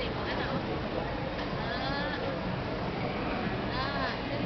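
A young child's high-pitched voice giving two drawn-out, rising-and-falling calls, one in the middle and one near the end, over steady background noise.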